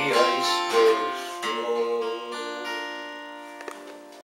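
Acoustic guitar strumming the closing chords of a folk ballad, the last chord left ringing and fading away. A couple of faint clicks come near the end.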